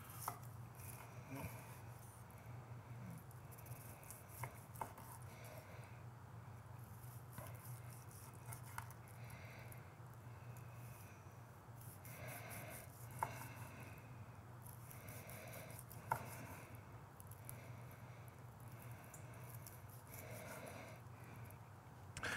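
Chef's knife slicing a cooked steak on a wooden end-grain cutting board: faint sawing strokes with now and then a light knock of the blade on the wood, over a low steady hum.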